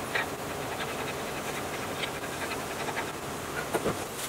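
Small metal clicks and scrapes as a brass gas-canister valve is handled and screwed into place, with a steady hiss behind them. The clicks come a few at a time, with a small cluster just before the end.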